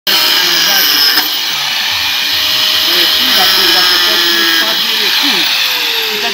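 Handheld electric angle grinder running at high speed with a steady high whine. Near the end it is switched off and its pitch falls as it winds down.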